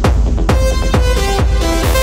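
Techno in a DJ mix: a steady kick drum about twice a second, with a synth line of stacked pitched notes coming in about half a second in and a brighter swell near the end.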